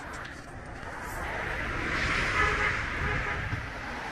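A car passing on the road, its road noise swelling to a peak about halfway through and then easing off a little.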